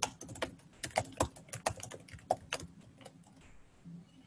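Computer keyboard typing: a run of quick, uneven key clicks that stops about three seconds in.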